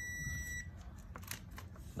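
A VC921 digital multimeter's continuity buzzer sounds a steady high beep, signalling continuity through the breaker under test, and cuts off about half a second in. A few light clicks follow.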